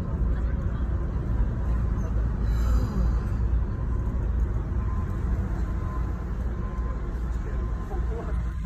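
Road and traffic noise heard from inside a car cabin: a steady low rumble as the car creeps along in dense city traffic.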